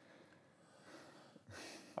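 Near silence: quiet room tone, with a faint breath drawn near the end.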